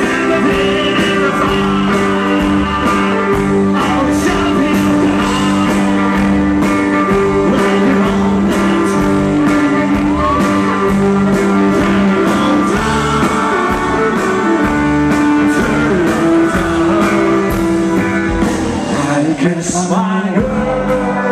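Live band music: accordion holding steady chords over a drum beat with regular cymbal strikes, with guitar and violin, in a stretch without clear sung words.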